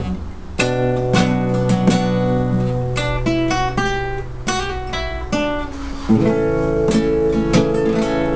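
Classical guitar with a cutaway playing a slow rumba phrase. It opens with a chord over a ringing bass note, moves to a single-note picked melody, and lands on another full chord about six seconds in.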